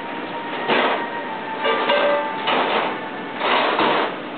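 Plastic cup crackling and scraping on carpet in four short bursts as a puppy grabs it in her mouth.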